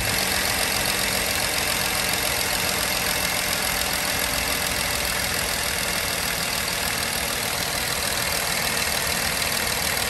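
A Jeep's V6 gasoline engine idling steadily with the hood open; the engine is due for top-end repair work.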